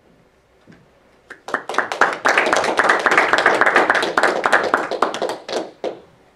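Audience applauding: many hands clapping, starting about a second and a half in and dying away just before the end.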